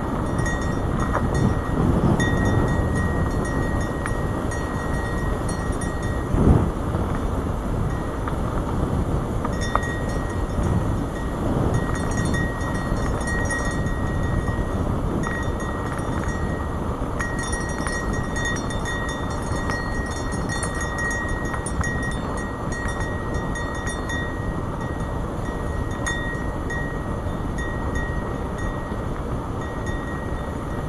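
Wind buffeting a helmet-mounted camera and the rumble of mountain-bike tyres rolling over a rough dirt trail, with a sharp jolt about six seconds in.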